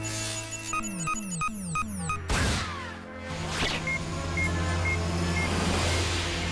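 Cartoon sci-fi sound effects over background music: a targeting scope beeping about three times a second as it locks on, a sharp zap with a falling sweep as the tracer is fired, then four slower tracking beeps.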